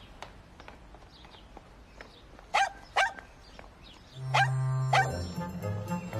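A dog barks twice in quick succession, about two and a half seconds in. About four seconds in, a music cue starts with a held low note.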